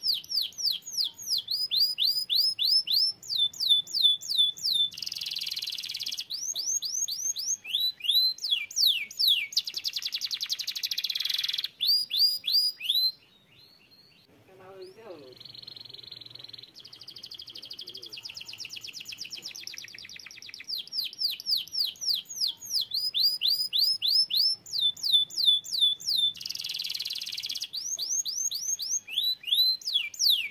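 Domestic canary singing: long runs of rapid, repeated sweeping notes and fast trills, high-pitched, with a pause of a few seconds about halfway through before the song starts again.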